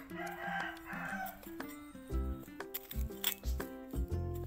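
A rooster crowing once, lasting a little over a second near the start, over background music; the music gains a bass beat in the second half.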